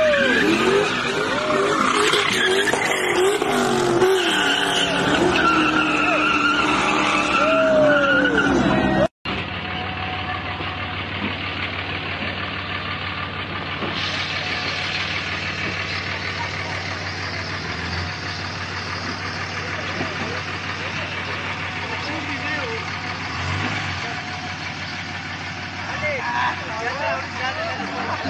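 Car spinning donuts, engine revving and tires squealing loudly for the first nine seconds or so. The sound then cuts off abruptly, giving way to a quieter, steady outdoor noise.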